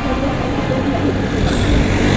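Steady low rumble of road and wind noise from an e-bike riding along a street.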